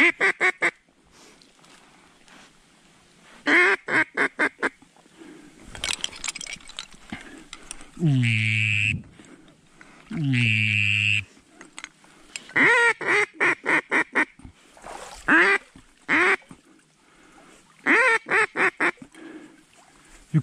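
Mallard hen-type quacking in repeated runs of four to seven quick quacks, each run falling away. Near the middle come two longer drawn-out calls of about a second each, falling in pitch.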